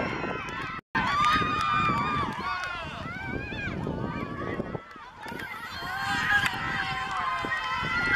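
Many young boys' voices shouting and cheering at once in celebration, high-pitched and overlapping, cut off briefly just under a second in.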